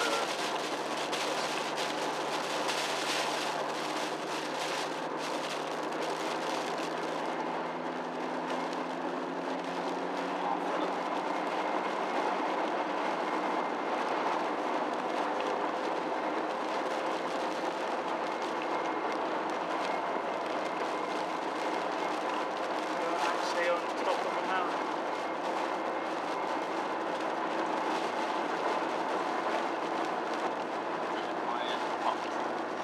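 Car heard from inside the cabin, its 1.9-litre diesel engine running under a steady drone of tyre and road noise while cruising. The engine note climbs slowly from about six to twelve seconds in as the car picks up speed, then holds steady.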